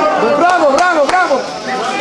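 Football supporters chanting together in the stands, several voices rising and falling in a repeated tune, with a few sharp hits among it.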